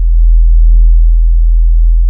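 Music: a loud, deep, steady bass drone, a single very low note held without change.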